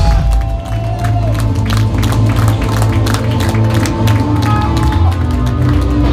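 A post-metal band playing live: sustained heavy guitar and bass chords over continuous drum and cymbal hits.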